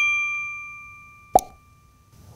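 A bright notification-bell chime sound effect rings and fades away over about a second and a half. A single short click-pop follows about 1.3 seconds in, like a button-press sound effect.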